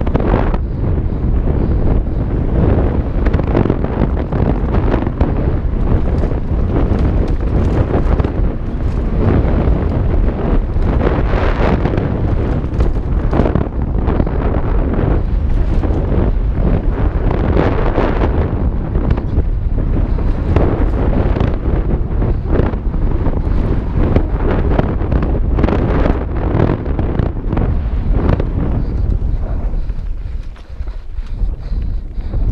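Heavy wind buffeting on a helmet-mounted action camera's microphone as a mountain bike descends a dirt singletrack at speed, mixed with tyre roar on the dirt and frequent short knocks and rattles from bumps along the trail.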